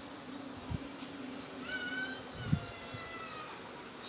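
A drawn-out animal call, held for about a second and a half and sliding slowly down in pitch, over a low steady hum; two soft thumps fall before and during it.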